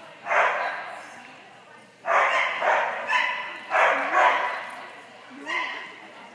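A dog barking in about six sharp bursts, each trailing off in the echo of a large indoor hall.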